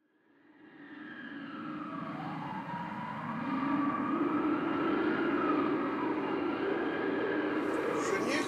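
Howling wind that fades in over the first few seconds and then holds steady, its pitch wavering up and down.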